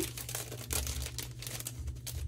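Packaging crinkling and rustling in the hands as a sticker grab bag is opened, a quick irregular run of crackles over a low steady hum.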